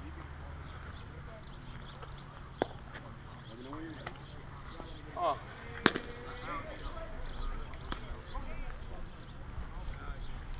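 Players' voices calling across an open softball field, faint and scattered, with one sharp, loud crack about six seconds in that rings briefly.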